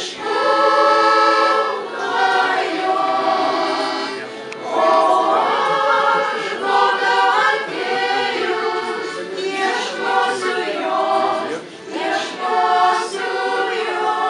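Women's vocal ensemble singing a Lithuanian song in several-part harmony, in phrases of a few seconds with short breaks between them.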